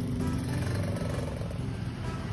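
Motor scooter and surrounding road traffic running at low speed: a steady low engine rumble.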